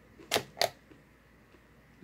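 Two sharp crunches about a third of a second apart: popcorn being bitten and chewed.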